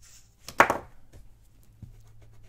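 Pencil eraser rubbing on paper in quick, faint strokes, rubbing out a pencil drawing. A single short spoken word cuts in about half a second in.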